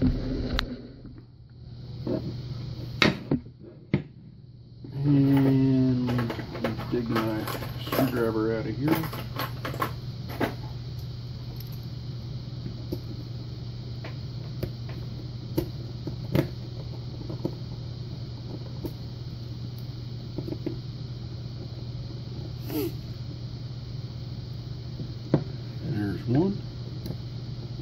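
Scattered small metallic clicks and taps as a precision screwdriver works a screw out of the back cam of a brass pin-tumbler lock cylinder, over a steady low hum. About five seconds in, a few seconds of wordless voice.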